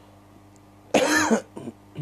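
A man clearing his throat: one loud voiced cough about a second in, then a shorter, quieter one.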